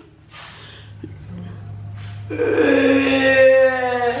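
A woman's drawn-out wail, one long cry held at a steady pitch for nearly two seconds, starting a little past halfway after a quiet start. A low steady hum runs underneath.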